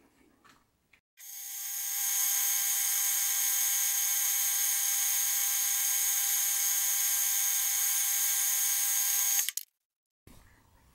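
Metal lathe running a light, hand-fed finishing cut on a steel bar with an old insert tool: a steady high-pitched whine with a few fixed tones. It starts about a second in, builds up over about a second, holds level and cuts off suddenly near the end.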